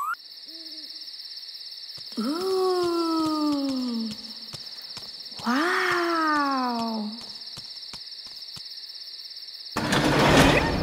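Night-ambience sound effects: an owl hoots twice, each a long call falling in pitch, over a steady high cricket trill.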